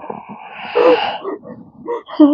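A woman moaning and groaning in pain with rough, breathy gasps, loudest just under a second in, then tailing off.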